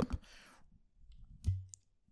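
Handling of a glass globe decanter held close to the microphone: faint rustling, then a single sharp click about one and a half seconds in, followed by a brief high ring.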